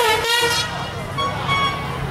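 A horn toots once for about half a second at the start, over the low rumble of a pickup truck rolling slowly past.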